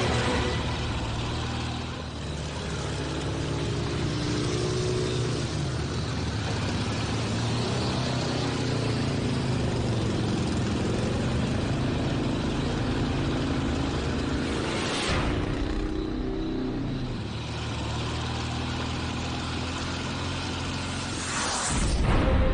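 Motorcycle-with-sidecar and car engines running as the vehicles drive up, with the engine pitch rising and falling.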